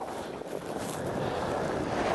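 Skis sliding over firm, fast spring snow as a skier pushes off and picks up speed, with wind rushing on the microphone: a steady hiss that grows slightly louder.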